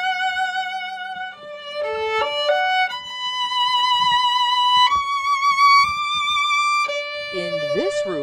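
Solo violin, a restored 1870s German instrument, playing a slow melody with vibrato: a long held note, a quick run of short notes about two seconds in, then long held higher notes.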